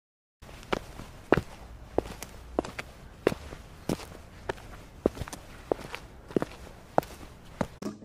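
Footsteps as a toddler doll is walked down the stairs of a toy bunk bed: light, sharp taps, about two to three a second, after a brief silence at the start.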